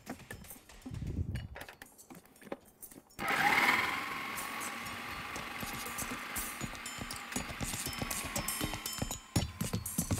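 Electric food processor switched on about three seconds in: its motor whines up to speed, then runs steadily, grinding the rice kofta mixture of rice, vegetables, meat and spices into a paste.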